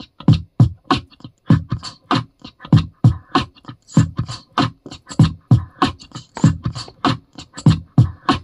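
Beatboxing into a handheld microphone: a steady, fast beat of vocal percussion, with deep kick-drum sounds alternating with sharper snare and hi-hat sounds.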